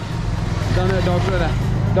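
People talking over the steady low rumble of street traffic: car and scooter engines running close by.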